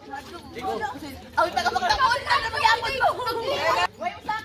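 Voices of people chattering and calling out, with no words the recogniser could make out; the talk gets louder about a second and a half in.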